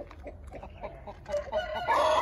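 Chickens clucking, with a rooster beginning a long crow near the end.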